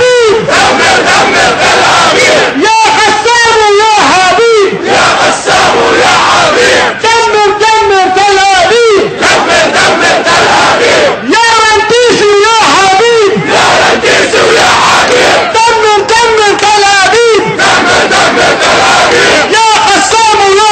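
Protest chant in call and response: a single loud voice shouts a phrase of about two seconds and the crowd shouts back, the exchange repeating about every four and a half seconds, four times over.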